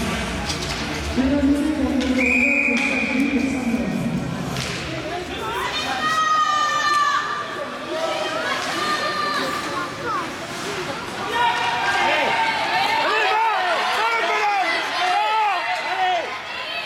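High-pitched children's voices shouting and calling in a reverberant ice rink, many short overlapping calls in the second half, with one steady high tone lasting about two seconds near the start.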